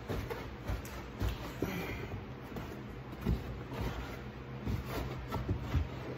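A Hyundai Santa Fe's removable cargo-area storage tray being tugged and worked loose by hand: scattered light knocks, scrapes and rattles.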